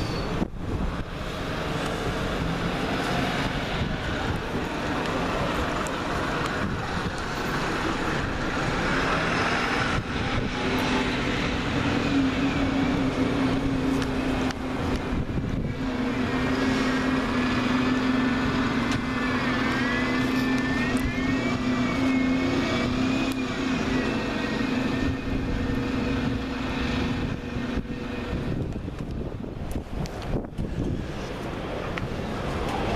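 Diesel single-deck buses running at a bus station, a steady engine hum that grows louder as a bus drives across in the middle, with a whine that rises and falls for a few seconds in the second half.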